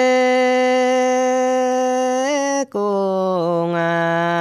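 A man singing a Dao-language song, unaccompanied: one long held note, a short break for breath about two and a half seconds in, then a lower note that wavers slightly.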